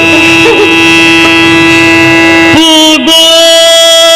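Yakshagana music: a long held sung note over a steady drone, moving to a new held note with a brief bend about two and a half seconds in.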